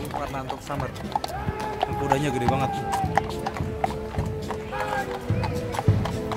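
Horses' hooves clip-clopping at a walk on a paved road, irregular short clops, with music and voices going on at the same time.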